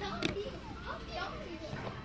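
Faint children's voices in the background, with a single brief click about a quarter second in.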